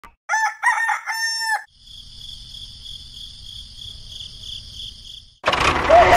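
A rooster crows one cock-a-doodle-doo, followed by a steady high-pitched insect-like trill over a faint low rumble. Near the end a louder burst of chicken clucking comes in.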